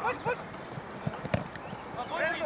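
Dull thuds of a football being kicked and players' feet on artificial turf, with the sharpest knock about two-thirds through, and a brief shout near the start.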